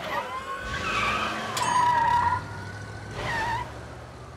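Car tyres screeching in two bursts, a longer, louder one about a second and a half in and a shorter one near the end, as the car swerves and brakes hard.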